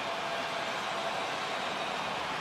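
Steady basketball-arena background noise: an even hiss with a faint held tone, and no distinct ball bounce or swish.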